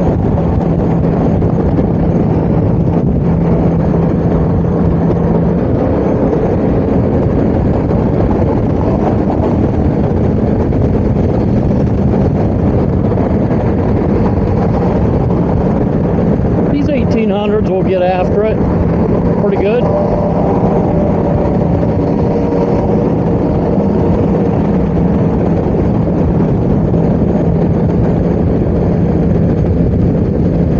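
Steady wind and road noise of a Honda Goldwing GL1800 at highway speed, heard from the rider's seat, with the flat-six engine's even drone underneath. A brief wavering sound rises over it about seventeen seconds in.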